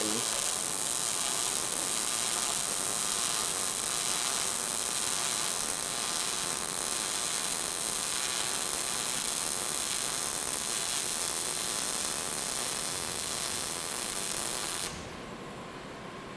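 MIG welding arc running steadily as the wire feeds into a horizontal V-groove, laying the first of a two-pass fill. The sound cuts off suddenly about 15 seconds in as the arc is stopped.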